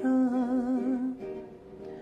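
A man's voice holds one sung note with vibrato over soft acoustic guitar accompaniment. The voice fades a little past the middle, and the guitar carries on quietly alone.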